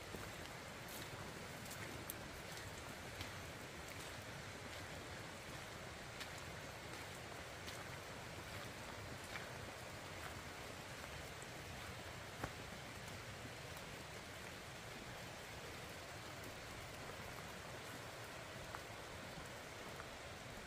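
Steady rain falling, with scattered drops tapping on nearby surfaces.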